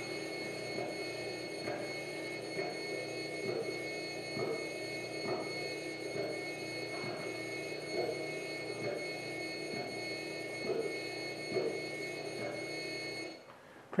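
Steady mechanical hum of a robot arm's motors, made of several fixed tones, with faint knocks repeating a little under once a second as the arm repeats its practised motion. The sound cuts off suddenly near the end.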